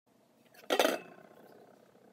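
A single clink of metal kitchenware against a stainless steel pot about three-quarters of a second in, with a faint ring dying away after it.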